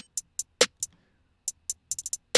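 Programmed trap-beat drums with only the high parts playing: quick hi-hat ticks about five a second, with one fuller drum hit about half a second in. The ticks stop for about half a second in the middle, then start again.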